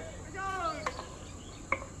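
Insects chirring outdoors as a steady high hiss. A faint voice comes in briefly about half a second in, and two small clicks follow, near one second and near the end.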